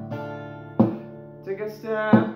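Acoustic guitar strummed: full chords struck and left to ring, one right at the start and another under a second in. A singing voice comes in near the end.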